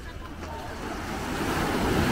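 Small surf wave breaking and washing up the sand, the rush of water building through the second half and loudest at the end.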